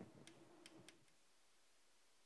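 A few faint, short clicks of chalk striking a blackboard in the first second, then near silence: room tone.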